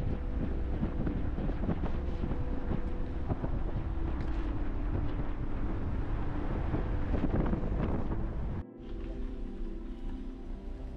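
Wind rushing and road noise from a car driving along a paved road with the passenger window open, a steady rumble heavy in the lows. About a second and a half before the end it cuts off suddenly and gives way to quieter background music with sustained tones.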